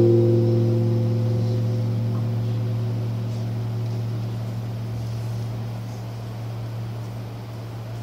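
A single deep bell tone, struck just before and ringing on, fading slowly over the seconds; it marks the elevation of the chalice just after the words of consecration at Mass.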